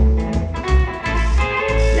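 Live rockabilly played on hollow-body electric guitar and upright double bass, with steady bass notes under held guitar notes, in the closing bars of a song.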